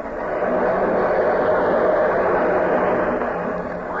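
Audience applauding steadily, easing slightly near the end.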